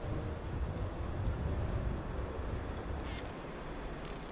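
Outdoor background: a steady low rumble, with a couple of faint short calls about a second in and about three seconds in.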